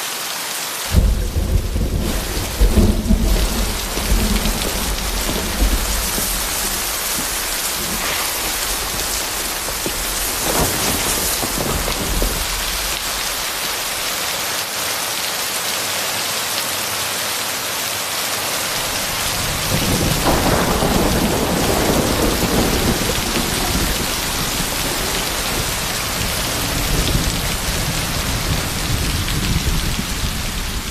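Heavy rain pouring steadily, with two long rolls of thunder, one starting about a second in and another about two-thirds of the way through.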